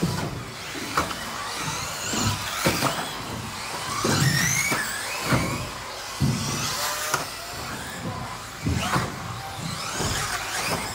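Electric 1/10 4WD RC racing buggies running laps, their motors whining up and down in pitch as they accelerate and slow through the corners. Several sharp knocks come through as the buggies land off the jumps and hit the track.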